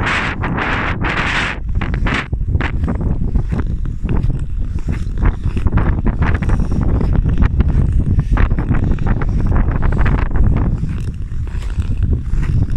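Wind noise on the microphone over the scrape and hiss of ice skate blades gliding and pushing on smooth natural lake ice, with louder scraping strokes in the first second and a half.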